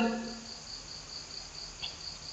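A man's drawn-out word trails off in the first half-second. Then a faint background remains: a rapid, high-pitched pulsing chirp, about five pulses a second.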